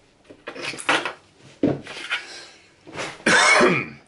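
A man clearing his throat with short throaty noises, the loudest near the end, among faint handling sounds as he reaches for and picks up a pocket knife.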